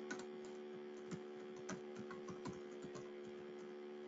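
Faint computer keyboard typing: irregular, scattered keystrokes over a steady electrical hum.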